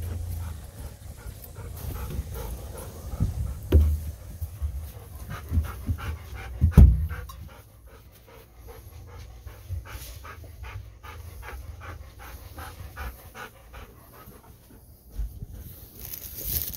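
A dog panting in a quick, steady rhythm after a walk. A few dull thumps come in the first half, the loudest about seven seconds in.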